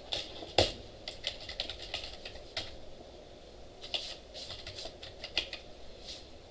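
Typing on a computer keyboard: irregular key clicks, with one louder knock about half a second in.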